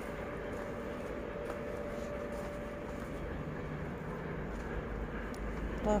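Steady background hum and low rumble, with a faint steady tone through the first half.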